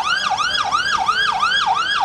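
Police vehicle siren sounding a fast yelp: rapid pitch sweeps, about four a second.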